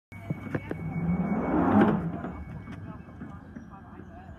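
A London Underground Northern line train standing at the platform: a few clicks, then a rush of noise that swells to a peak just under two seconds in and fades away, over a steady whine.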